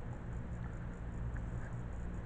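Small metal parts of an ER collet and collet nut being handled by hand, giving a few faint light ticks over a steady low hum.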